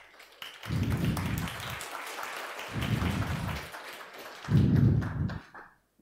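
Audience applauding at the end of a conference talk, a dense patter of clapping that dies away near the end, with a few low muffled thuds under it, the loudest late on.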